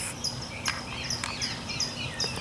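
Small birds chirping and twittering: many short, high chirps in quick, irregular succession.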